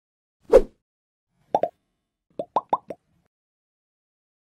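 Sound effects for an animated logo intro: one soft hit about half a second in, then a quick pair of pops, then four quick pops in a row.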